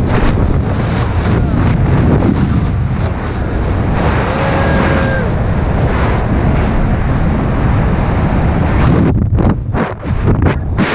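Loud, steady rush of wind buffeting a helmet camera microphone as a BASE jumper falls through the air after letting go of a zipline. A faint steady tone lasts about a second around four seconds in, and the wind turns choppy near the end.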